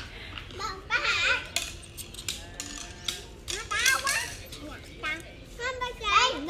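Young children talking and calling out in high voices, several short times, with a few sharp clicks in between.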